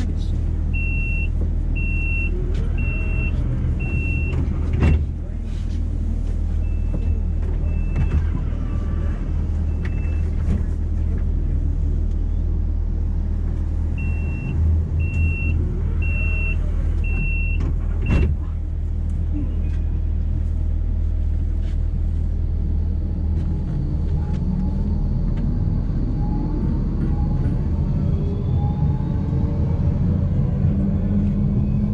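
Tram standing at a stop with a steady low hum from its equipment, while the door warning sounds: short high beeps about one a second in groups of four, three times over, with a sharp knock after the first and last groups. Near the end the traction motors rise in a whine as the tram pulls away.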